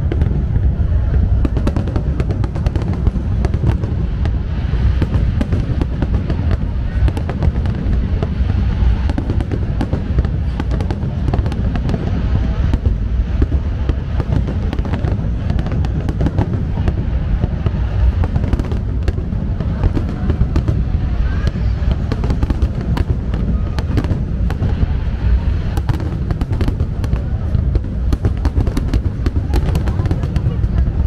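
Large aerial fireworks display: a continuous barrage of shells bursting overhead, with many overlapping bangs and crackle over a steady deep rumble.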